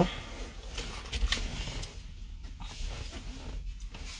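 Handling noise from a phone being moved about: scattered rustles and small clicks against the microphone.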